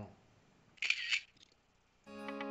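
Near silence, broken a little under a second in by one brief, high-pitched click-like noise in two quick bursts.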